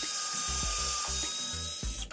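A power drill running continuously with a steady motor whine, cutting off right at the end.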